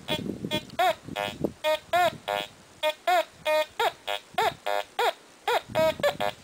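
Teknetics T2 metal detector sounding off as its coil sweeps back and forth over a coin with an iron nail on top of it: a rapid string of short electronic beeps, about two or three a second, mostly the coin's high tone. Lower iron tones break in as the coil goes off the target.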